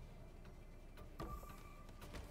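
Faint online slot-game sounds as the reels spin and land: a few soft clicks, then a short steady tone in the second half, over a low hum.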